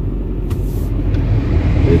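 Steady low rumble of a car running inside the cabin with the defroster on, growing slightly louder. The car is warming up to melt the ice off its frozen windshield. A brief hiss comes about half a second in.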